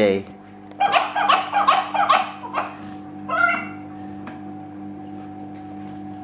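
Rubber squeaky dog toy ball squeezed in quick succession, a run of about eight short squeaks over less than two seconds, then one more after a pause. A steady low hum underneath.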